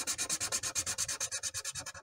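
Felt-tip marker scribbling back and forth on paper, a fast, even scratching of about ten strokes a second that fades out near the end.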